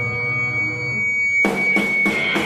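Live powerviolence band: a held, droning chord with a thin high steady tone over it, then about a second and a half in the full band comes in with a few hard, loud hits.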